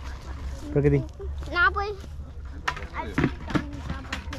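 A child's high voice saying a couple of short words, then a few short sharp clicks in the second half, over a steady low rumble.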